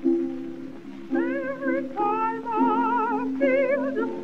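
Old 1926 recording of a contralto singing a spiritual. Held accompaniment chords sound first; about a second in the voice enters, singing long notes with a wide vibrato.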